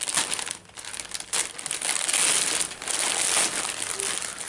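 Plastic wrapping crinkling and rustling as it is handled and pulled open, a dense crackle that dips briefly just under a second in and is loudest in the second half.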